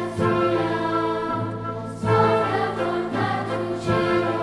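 Children's choir singing with a symphony orchestra: full, held chords that change about every two seconds.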